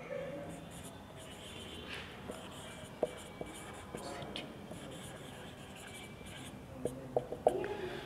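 Marker pen writing on a whiteboard: faint scratchy strokes with a few light clicks.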